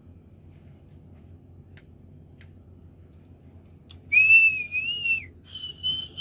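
A man whistling: one wavering note lasting about a second, starting about four seconds in, then a shorter steady, slightly higher note near the end, over a low steady hum.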